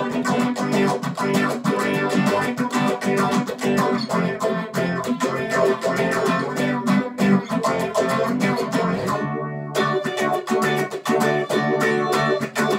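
Electric guitar played with rapid tremolo picking: a fast, even stream of repeated picked notes over sustained low notes. About nine and a half seconds in the picking stops briefly and the strings ring out, then the tremolo picking resumes.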